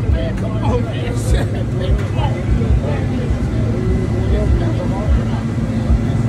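Several people's voices talking in the background over a steady low rumble from an idling car engine, with irregular low thumps.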